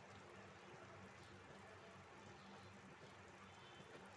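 Near silence: a faint steady hiss and low hum, with no distinct knocks or scrapes.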